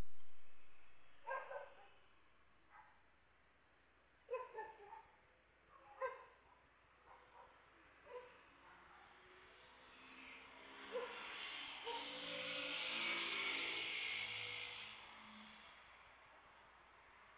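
A dog barking faintly, a handful of short separate barks a second or two apart. From about ten seconds in comes a longer, louder stretch of hiss with a few held low tones.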